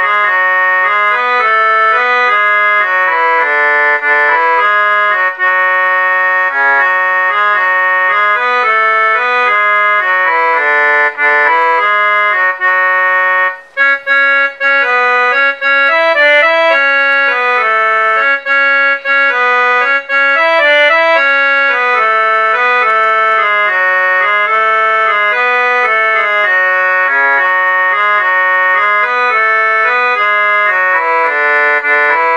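Casio mini keyboard on a harmonium/organ voice playing a slow Hindi song melody in held, reedy notes with lower notes sounding beneath. The playing pauses briefly about 13 seconds in, then carries on.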